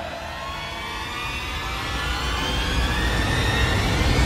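Helicopter sound effect: a low rumble under a turbine whine that rises slowly in pitch and grows steadily louder.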